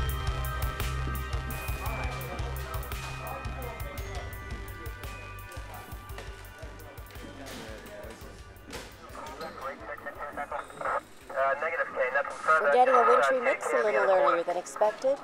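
Scene-change music with a deep bass, fading out over the first half, with scattered short clicks. About three-quarters of the way in, a voice starts speaking and gets louder toward the end, leading into a TV or radio news weather report.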